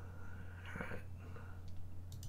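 A man's faint, breathy murmur or exhale while he thinks, over a steady low hum, with a faint click near the end.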